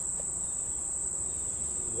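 Crickets trilling: one continuous, steady, high-pitched shrill.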